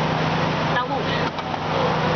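A short spoken word over steady food-court din: a dense background noise with a low, even hum that stops near the end.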